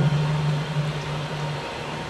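A low, steady droning tone from the TV episode's soundtrack, fading out about one and a half seconds in.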